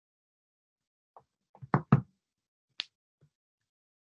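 A few short knocks or taps. Two louder ones come close together just before the middle, and a sharper click follows about a second later.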